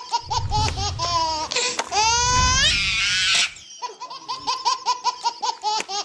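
Very high-pitched laughter in quick short notes, about four a second, swelling into one long rising squeal midway before the quick laughs resume.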